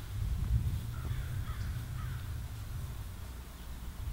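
Crows cawing: a few short, falling calls about a second in, over a low, steady rumble.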